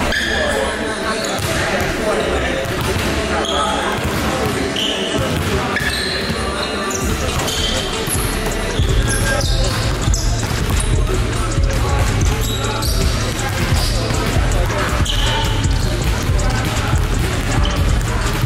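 Basketballs bouncing on a hardwood gym floor amid voices and chatter echoing in a large gym. Music with a heavy bass comes in about halfway.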